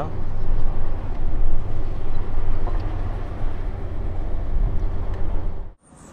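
Volvo semi truck's diesel engine heard from inside the cab while driving, a steady low drone with road noise. The sound cuts off suddenly near the end.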